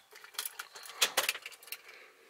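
Ignition keys jingling on their ring in a 2004 Jeep Wrangler TJ as the key is turned off at the tuner's prompt, partway through flashing a tune: a handful of short metallic clinks.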